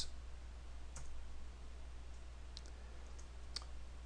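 A few faint, scattered computer keyboard key clicks over a low, steady hum.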